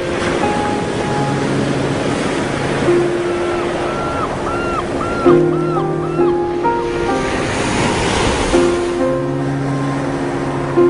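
Soft background music of held notes, with a run of short repeated notes in the middle, over a steady wash of ocean surf that swells near the end.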